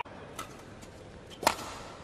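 Badminton racket strings hitting a shuttlecock: a light tap a little under half a second in, then a much louder, sharp crack about a second and a half in.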